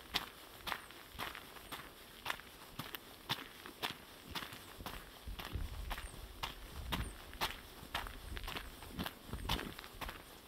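A hiker's footsteps crunching along a forest trail at a steady walking pace, about two steps a second.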